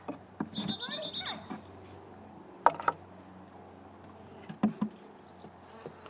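A wooden hive frame is pried loose with a metal hive tool and lifted out of a nuc box, giving two sharp wooden knocks a couple of seconds apart. A high, rapidly pulsed chirping phrase sounds near the start.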